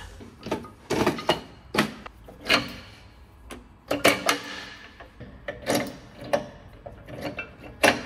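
Irregular metallic clinks and knocks as racecar brake calipers and hand tools are handled and fitted onto the wheel hubs, some strikes ringing briefly.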